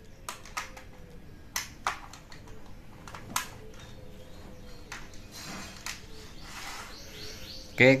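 Light plastic clicks and taps as a model diesel locomotive is handled and seated on HO-scale track, with sharp clicks about a second and a half in and again near three and a half seconds.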